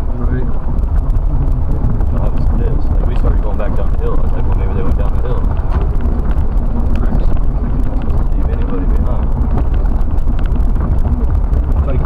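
Jeep driving slowly over a muddy dirt trail, a steady low engine and road rumble heard from inside the cabin, with people talking over it.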